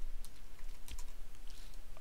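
Computer keyboard being typed on: a handful of light, irregular keystrokes as a line of code is entered.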